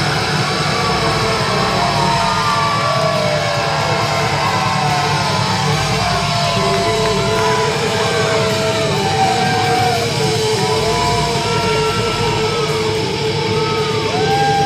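Live heavy rock band playing loudly: a held passage of gliding, bending lead lines over a steady low drone, with no clear drumbeat.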